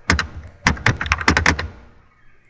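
Computer keyboard typing: a quick, irregular run of keystrokes that stops shortly before the end.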